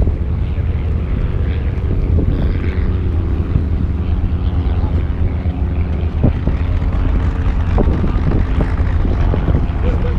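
Steady drone of a propeller aircraft engine over a heavy low rumble of wind on the microphone, with people talking nearby.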